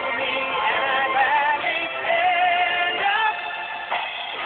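A country-pop song playing, with a sung vocal line holding wavering notes over a backing band; the sound is muffled, with no high treble.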